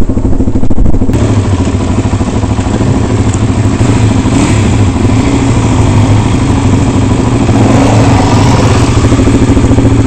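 Trail motorbike engine running at low, fairly steady revs as the bike picks its way over rough, rocky ground.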